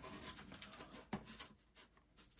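Faint rubbing and handling of small plastic parts as wall anchors are pushed into drilled holes in a concrete-block wall, with one sharp click about a second in. It goes almost silent in the second half.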